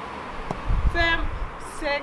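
A woman's voice makes two short utterances, with a brief low rumble underneath between about half a second and one second in.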